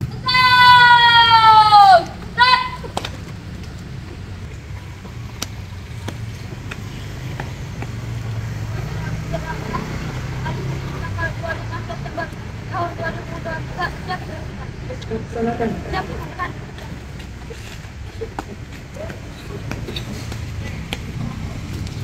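A child's long drawn-out shouted parade command, falling in pitch, with a short second shout about two seconds in: the call for the salute. Then a long stretch of steady low traffic rumble and faint scattered children's voices while the salute is held.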